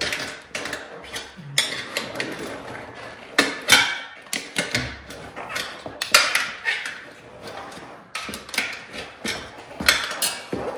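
Irregular knocks, clacks and scrapes of a dirt bike wheel being wrestled by hand into a knobby tire, the rim and tire knocking and rubbing as the rim is pushed down into it. The loudest knocks come a little after three and a half seconds and at about six seconds.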